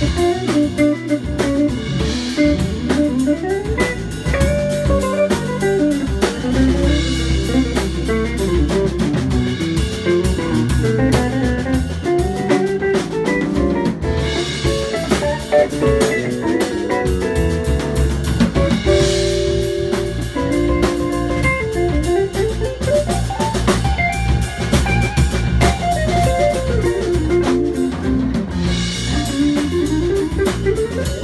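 Live instrumental band: a red semi-hollow electric guitar plays a single-note melodic line over electric bass and a drum kit, with cymbal washes every few seconds.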